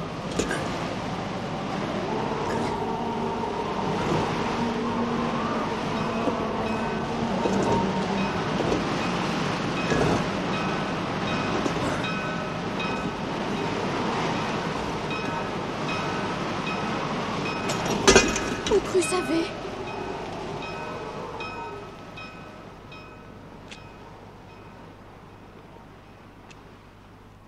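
A heavy stone tomb slab being levered open with a wooden cross: a long, continuous grinding and scraping of stone, with a cluster of loud knocks about eighteen seconds in, after which it turns much quieter.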